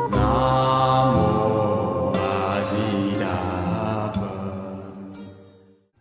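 Buddhist chant music: a chanted melody held in long sustained notes over musical accompaniment, fading out over the last second and a half.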